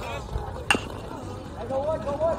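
A metal baseball bat hits a pitched ball once, a single sharp ping about two-thirds of a second in, putting the ball in play.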